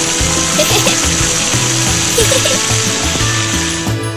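Cartoon sound effect of garden hoses spraying: a steady high hiss over background music, which cuts off suddenly.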